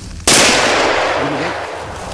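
A single hunting-rifle shot about a quarter second in, its report rolling away over about a second and a half.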